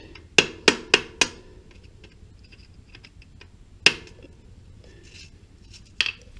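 Sharp metallic knocks of a screwdriver set in the notch of a bicycle bottom-bracket lock ring being struck to turn and loosen the ring. There are four quick knocks about a third of a second apart in the first second and a half, then a single louder knock about four seconds in, with faint small clicks between them.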